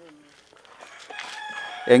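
A rooster crowing in the background: one long call that starts just under a second in and sags slightly in pitch toward its end.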